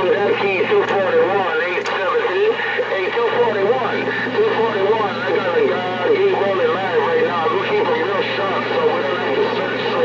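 Voices coming over a CB radio on channel 6, the speech wavering and crowded together with no clear words, over a steady low hum.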